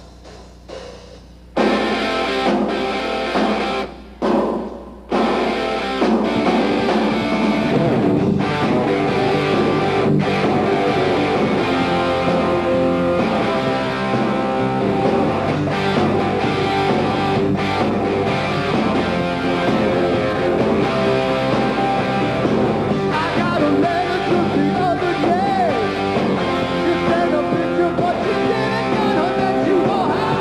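Live hard rock band starting a song: loud guitar chords come in suddenly about a second and a half in and break off twice briefly. The bass comes in about eight seconds in, and the full band plays on.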